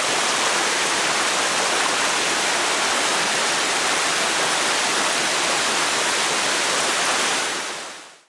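Waterfall on a mountain creek: a steady, even rush of falling water that fades in at the start and fades out just before the end.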